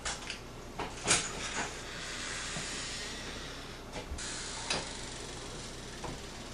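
A door being opened: a few short clicks and knocks from the latch and door, the loudest about a second in and two more around four to five seconds, with a faint hiss between them.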